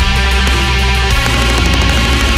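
Death-thrash metal: heavily distorted electric guitars over bass in a held, ringing passage, the drum strokes sparser than in the pounding bars either side.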